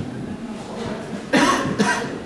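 A person coughing twice in quick succession, loud and short, about a second and a half in, over a background murmur of voices.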